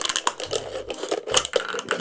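Scissors cutting through a thin plastic drinking bottle: a run of irregular snips and crackles of the plastic.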